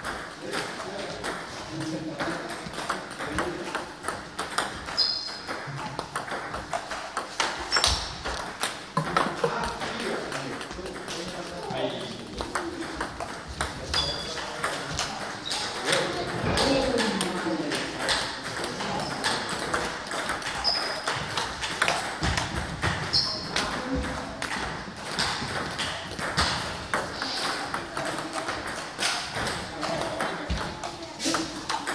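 Table tennis balls clicking repeatedly off the table and rubber paddles as serves are struck and returned in a serve-receive drill, with voices in the background.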